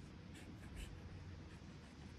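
Black permanent marker scratching on a cardboard box lid as it writes a signature: a few short, faint strokes in the first second.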